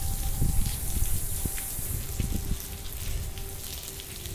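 Water from an automatic solar-panel cleaning system spraying and pattering onto the glass of rooftop solar panels, a steady rain-like hiss over a low rumble.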